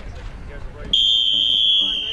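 Electronic starting signal: one steady, high-pitched beep that begins about a second in and is still sounding at the end, signalling the start of a distance race on the track.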